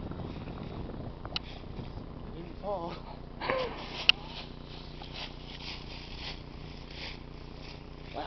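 Two short wavering vocal sounds from a person, not words, a little under three and about three and a half seconds in. A sharp click about four seconds in is the loudest sound. After it comes a faint crackling rustle of dry fallen leaves as someone moves about in them.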